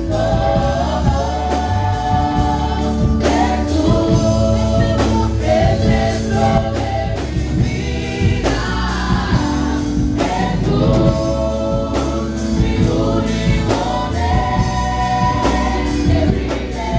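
Church gospel choir of women singing a Spanish-language song into handheld microphones, a lead singer with the others joining, over steady instrumental accompaniment.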